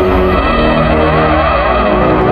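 Experimental electronic music: synthesizer tones slide quickly up and down in a repeating zigzag over a steady low, pulsing drone.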